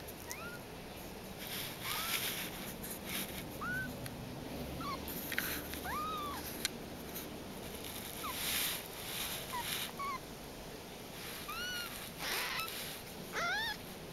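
Very young Persian kittens mewing. There are a dozen or so short, high mews that rise and fall, coming about once a second and bunching into quick pairs near the end.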